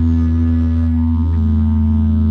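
Didgeridoo playing a steady low drone, its overtones shifting slightly about a second in.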